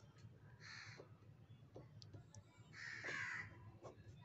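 Faint crow cawing, twice: a short caw about a second in and a longer, louder one around three seconds in.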